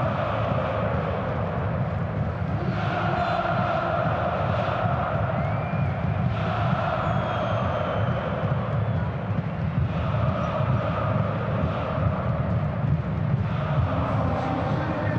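Football stadium crowd: supporters singing chants in sustained phrases a few seconds long over a steady din.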